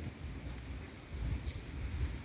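An insect chirping: a high, pulsed trill of about four pulses a second that stops about one and a half seconds in, over a low rumble.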